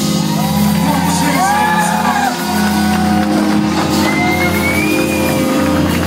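Live gospel worship music: sustained keyboard chords held under the whole passage, with voices from the congregation shouting and whooping over it in a large hall.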